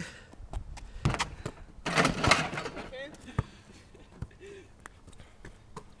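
A basketball thudding and bouncing, with a louder rattling clatter about two seconds in as the ball strikes the hoop on a missed dunk attempt.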